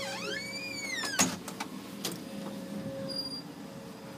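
A door squeaking as it is opened into a closet: a high squeal that slides down in pitch over about a second, ending in a sharp click. A few faint clicks and a steady low hum follow.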